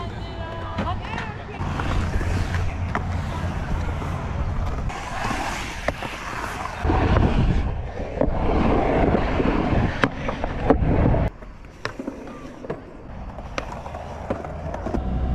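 Skateboard wheels rolling through a concrete bowl, the rumble swelling and fading as the board carves, with sharp clacks of the board. The rolling drops away about eleven seconds in, leaving a few clacks.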